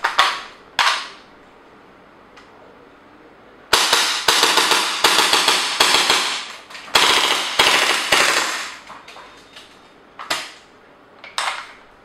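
Gas-blowback airsoft MP5K fired in two long fully automatic bursts, a rapid string of sharp, crisp cracks as the metal bolt cycles, with a brief break between them. Before the bursts come two sharp clacks within the first second, when the cocking lever is worked. Two more clacks come near the end as the magazine is handled.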